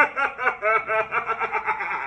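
A man laughing hard, a fast string of pitched ha-ha sounds about six a second.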